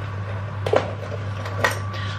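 A steady low hum with a fainter high steady tone above it, broken by two short clicks or knocks about a second apart.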